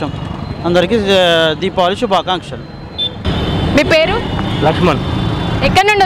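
People talking over a steady background of street traffic.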